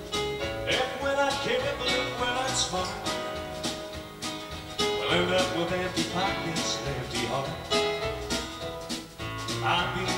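Live country band playing a song, with acoustic guitar, keyboard and drums.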